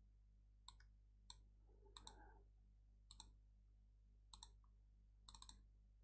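Faint computer mouse clicks: scattered single clicks, then a quick run of three or four near the end, over near silence.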